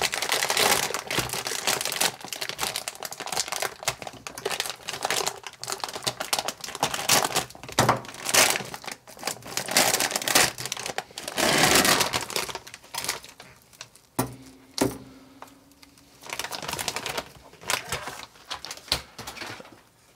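Anti-static plastic bag crinkling and crackling as it is pulled open and peeled off a circuit board by hand, in dense bursts of crackles that thin out in the second half. Afterwards it is called a noisy thing.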